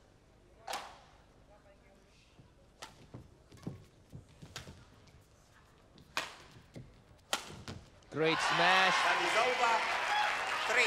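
Badminton rally: sharp racket strikes on the shuttlecock, roughly one every second or so, with one lone hit near the start. About eight seconds in the rally ends and a hall crowd breaks into loud cheering and applause.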